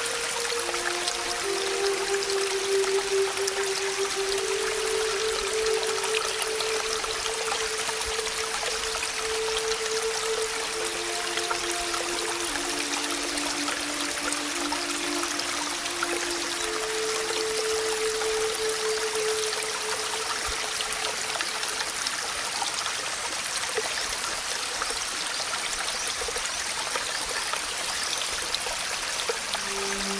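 Steady rain, an even hiss throughout, with a slow, soft melody of long held notes over it; the notes stop about two-thirds of the way through, leaving only the rain.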